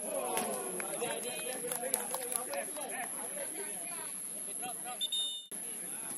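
Footballers' voices shouting and calling to each other during play, with a few sharp knocks about two seconds in. Near the end a brief high tone sounds and the audio cuts off abruptly.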